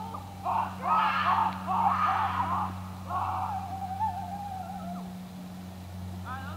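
A high voice in several short drawn-out notes, then one long wavering note that fades out about five seconds in, over a steady low hum.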